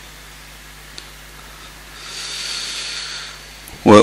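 A pause in Quran recitation over a public-address system: loudspeaker hiss and a steady low hum. About two seconds in, a rush of breath into the microphone lasts about a second and a half. Just before the end, the reciter's voice enters loudly on a long held melodic note.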